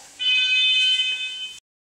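A loud, steady high-pitched buzzing tone starts a moment in and cuts off suddenly after about a second and a half.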